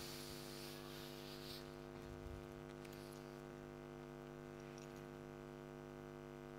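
Quiet room tone with a steady electrical hum, with a few faint soft knocks about two seconds in.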